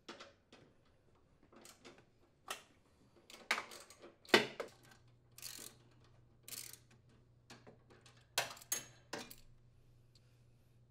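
Irregular metallic clicks and knocks of a socket wrench and steel mounting bolts being worked loose from a Craftsman riding mower's steering support. There are about a dozen separate knocks, and the loudest comes a little past the middle.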